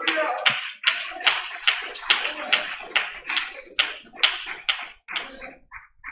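Congregation clapping in a steady rhythm, about two and a half claps a second, dying away near the end.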